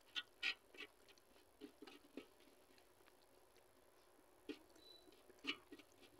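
Faint, scattered clicks and squelches of fingers gathering and mixing rice and dal on a steel plate, mixed with eating mouth sounds, the loudest a few quick ones in the first half-second.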